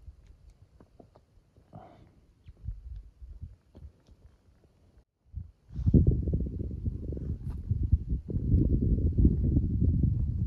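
Wind buffeting the microphone: quiet with a few faint ticks for the first five seconds, then loud, low gusting from about six seconds in.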